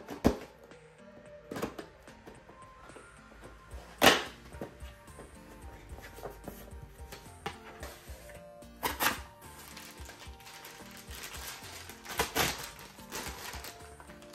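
A cardboard figure box is slit open and its cardboard insert pulled out, giving rustles and sharp cardboard snaps. The loudest snap comes about four seconds in, with more near nine and twelve seconds. Soft background music plays underneath.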